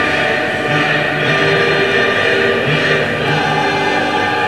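Background music: a choir singing long held chords.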